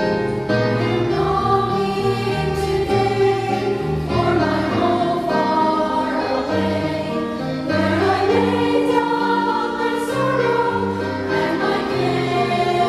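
A mixed church choir of women's, men's and boys' voices singing a gospel song in harmony, in held, flowing phrases.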